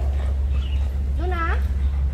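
Alaskan Malamute giving one short, pitched vocal call, a whine-like "woo" that rises and bends in pitch, about a second and a half in, over a steady low hum.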